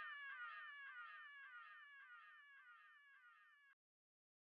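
Faint tail of an end-credits jingle: rapid, repeating short pitched chirps, about three or four a second, fading away and cutting off just before the end.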